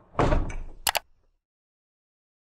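Audio-logo sound effect for an animated title card: a short burst of rushing whoosh, then two quick sharp clicks just under a second in.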